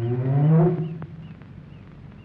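A man's short wordless vocal sound, like a grunt or 'hmm', rising in pitch and then levelling off, over within the first second.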